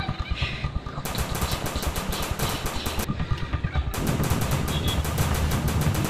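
Automatic gunfire sound effect in two rapid bursts of about ten shots a second. The first starts about a second in and lasts two seconds; the second starts about four seconds in.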